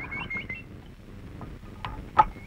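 A few short, high bird chirps in the first half second over a quiet background, then a couple of light clicks.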